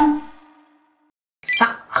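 A single bell-like ding sound effect that rings and fades away over about a second. After a moment of silence, guitar background music and a man's voice start near the end.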